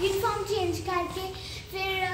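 A young girl singing, holding notes that step up and down in pitch.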